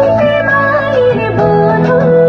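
Recorded devotional song to Durga playing: a voice sings long notes that bend and slide over instrumental backing, moving to a new note about one and a half seconds in.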